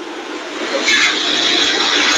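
A steady rushing noise with no speech in it, which gets louder about a second in.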